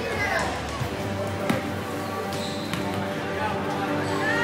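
Basketball bounced a few times on a hardwood gym floor by a player at the free-throw line, each bounce a sharp knock, over the murmur of spectators in the gym.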